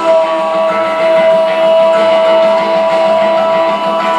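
Live rock band playing, dominated by one long high note held steady for about four seconds, sliding up into pitch at the start and breaking off just before the end.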